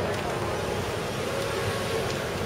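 Steady city street traffic noise, a low rumble of car engines and tyres.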